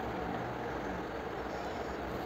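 Steady background noise, an even hiss and rumble with no distinct events.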